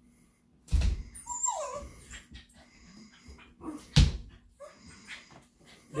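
Small mixed-breed dogs playing on a man on a leather couch: a thump, then a short whine that falls in pitch about a second and a half in, and another sharp thump at about four seconds, with lighter bumps and scuffles between.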